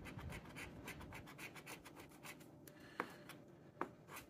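A metal scratcher coin scraping the coating off a scratch-off lottery ticket in rapid, faint short strokes, with two sharper clicks near the end.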